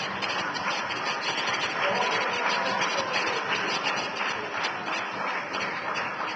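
Crowd applause: dense, steady clapping.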